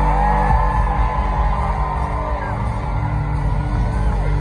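Live country-rock band playing loudly through arena speakers, with the crowd whooping and yelling over the music.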